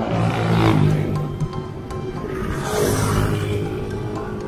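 Two loud, heavy exhales blown into the camera microphone about two and a half seconds apart, from a cyclist out of breath on an uphill climb. Background music plays underneath.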